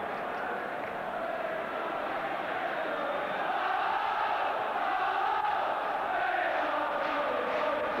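Football stadium crowd singing and chanting together, a dense wavering mass of voices that swells a little over the first few seconds, heard through an old TV broadcast soundtrack with the top end cut off.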